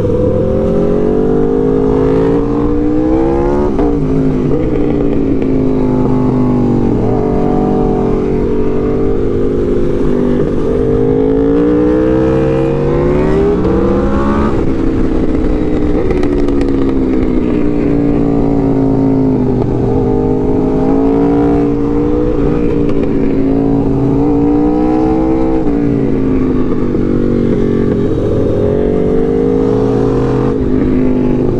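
Aprilia RSV4 Factory's V4 engine being ridden hard. The engine note climbs steadily and then drops sharply, several times over, as the throttle is opened and closed.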